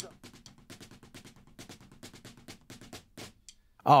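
Light, quick drumstick strokes on a practice pad set on the snare drum, playing a flam and double-stroke rudiment exercise. The strokes run evenly and quietly and stop a little before the end.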